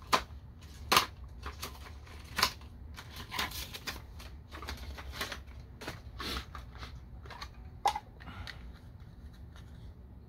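Hard plastic packaging of a diecast model truck being handled and opened: a run of sharp plastic clicks and crackles, the loudest snaps at the very start, about a second in, about two and a half seconds in and near eight seconds.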